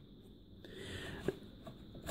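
Faint scrape of fingers tugging the hard disk caddy out of a Dell Inspiron 6000 laptop, with one small click about a second and a quarter in.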